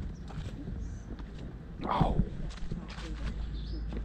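Footsteps of someone walking along a street, faint short steps over a steady low rumble, broken about halfway by a loud exclaimed "Oh!".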